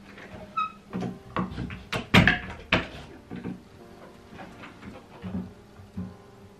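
Interior door and its handle clicking and knocking as it is opened and shut, a string of sharp knocks with the loudest about two seconds in, over quiet background music.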